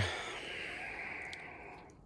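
A long breathy exhale, fading away over nearly two seconds, with a faint click about halfway through.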